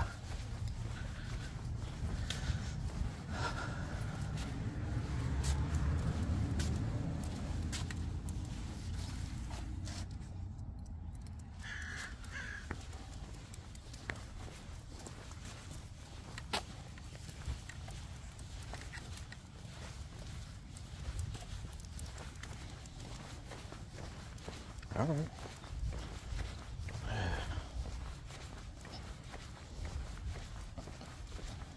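Footsteps of a person walking, with scattered light clicks, and a low rumble that swells and fades between about four and eight seconds in.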